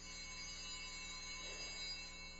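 Altar bells rung at the elevation of the chalice, signalling the consecration of the wine. A bright, high ringing starts suddenly, holds for about two seconds, then fades.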